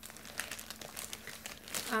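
Clear plastic bag crinkling as it is handled: an irregular run of small crackles.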